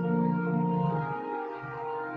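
Organ playing sustained chords as offertory music at Mass; the low bass notes drop out about a second in and come back near the end.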